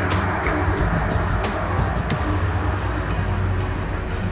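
Elliptical cross trainer being pedalled: a steady whirring rumble from the flywheel and drive, with a few faint clicks.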